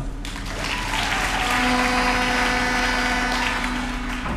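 Audience applause that swells over the first second, holds, and fades out near the end, with a steady held note sounding beneath it.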